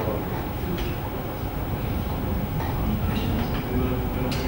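Steady low rumble of room noise in a large hall, with faint murmuring voices and a few soft knocks.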